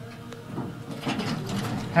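Elevator doors sliding open with the door operator's mechanical rattle as the car arrives at a floor, after a faint click about a quarter of a second in.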